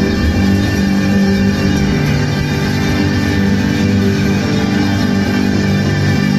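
Live band music with sustained held notes and chords at a steady, loud level, heard from the audience.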